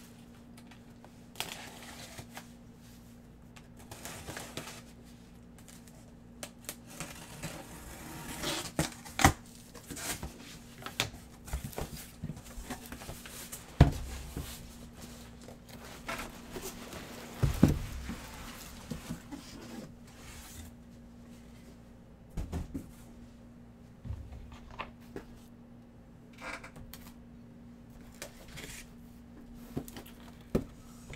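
A large cardboard shipping case being opened by hand and unpacked: cardboard scraping, rustling and tearing, with scattered knocks and a few heavier thumps as the boxes inside are shifted and pulled out, over a steady low hum.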